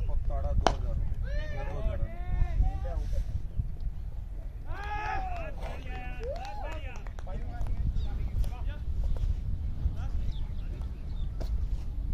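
A cricket bat striking the ball with one sharp crack just under a second in. Distant fielders then shout and call out as the batter is caught, over wind rumbling on the microphone.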